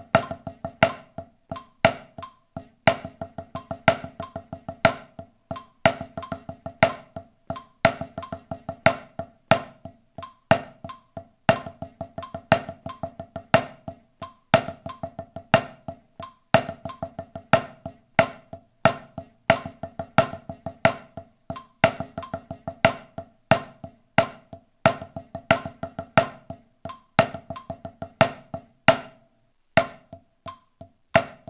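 Drumsticks playing a paradiddle rudiment exercise on a practice pad atop a marching snare: rapid, even sticking that alternates binary paradiddles with ternary paradiddle-diddles. A steady metronome click at 90 BPM runs under it.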